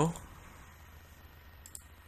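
A few short computer-mouse clicks near the end, over a low steady electrical hum.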